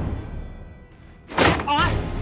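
Dramatic background music, with a loud thud about one and a half seconds in, followed at once by a short wavering high-pitched sound.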